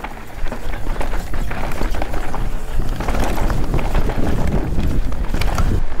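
Mountain bike descending a dry, loose dirt singletrack, picked up by an onboard camera: tyres crunching over the dirt and the bike rattling over the bumps, with a low rush of wind on the microphone.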